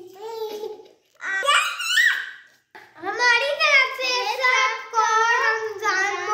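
Young girls' voices speaking in a sing-song way: a short phrase, a brief high-pitched call about a second and a half in, then continuous chanted speech from about three seconds.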